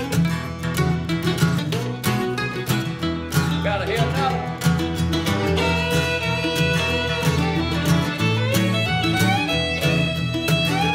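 Bluegrass string band playing an instrumental break: fiddle lead over strummed acoustic guitar, mandolin and upright bass. The fiddle slides into long held notes in the second half.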